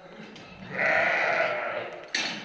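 A Dorper sheep bleats once in a single call of a bit over a second, starting a little under a second in.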